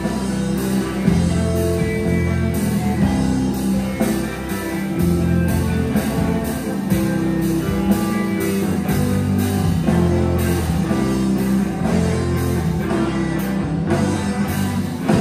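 A rock band playing live without singing: electric guitars, bass guitar and drum kit, with a steady drumbeat.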